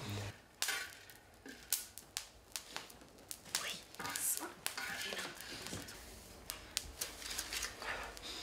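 Coffee beans roasting, crackling and popping in irregular sharp clicks, with a brief hiss about four seconds in.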